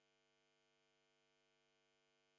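Near silence, with only a faint steady hum underneath.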